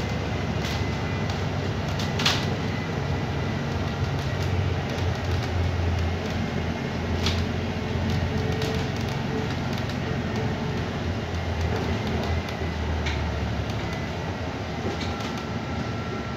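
Cabin noise inside a moving bus: a steady low drone from the drivetrain and road, with a faint high whine and a few sharp rattles from the bodywork, the strongest about two seconds in.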